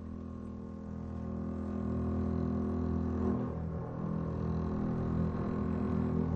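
Symphony orchestra sustaining a low, dense chord in a contemporary classical piece, swelling louder over the first two seconds and then holding.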